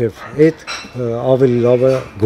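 Only speech: a man talking.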